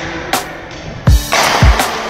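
Electronic backing music: two deep kick-drum hits about half a second apart near the middle, under a loud hissing cymbal swell and sustained synth tones.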